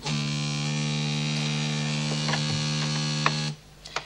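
A desk telephone's buzzer ringing in one steady buzz, with a few faint clicks over it, cut off suddenly about three and a half seconds in as the receiver is lifted.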